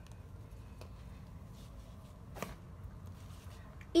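Faint rustling of a cloth towel being spread and smoothed by hand over damp oak leaves, with one short knock about two and a half seconds in.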